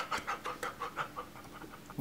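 A man's breathy laughter, quick rhythmic bursts that trail off and fade.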